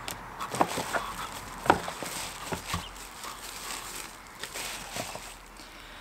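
Tissue paper and cardboard rustling as a cable is pulled out of a packing box, with several small clicks and knocks in the first three seconds.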